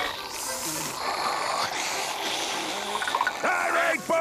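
Cartoon sound effect of a drink being slurped hard through a straw, a continuous wet sucking noise, with faint music underneath.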